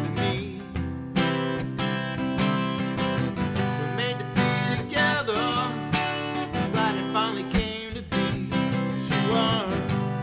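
Acoustic guitar strummed in a steady rhythm, with a man's voice singing phrases over it at several points.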